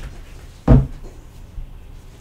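A single dull thump about three-quarters of a second in, a tarot deck knocked against the wooden desk as the cards are handled, followed by a faint click.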